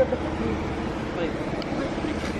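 Car idling after a remote start, heard with the driver's door open, with a short knock right at the start. Faint voices run underneath.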